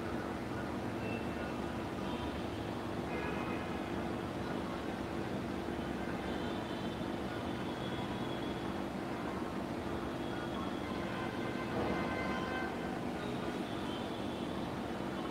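Steady background rumble with a low hum, and faint higher tones drifting in and out.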